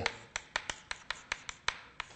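Chalk tapping and clicking against a chalkboard as words are written, about four or five sharp clicks a second.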